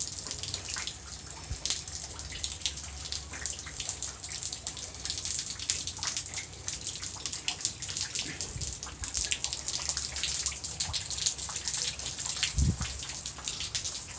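Heavy wet snow falling and dripping: an irregular patter of small ticks and drips over a steady high hiss, with a dull low thump near the end.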